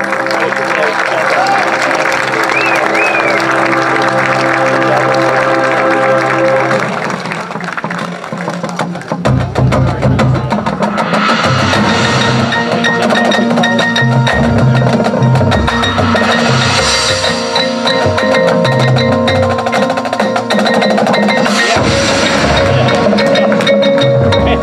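Marching band show music. A sustained chord holds for the first several seconds and fades away. Then the percussion section takes over: runs on tuned marching bass drums, front-ensemble mallet keyboards, and cymbals swelling in every few seconds.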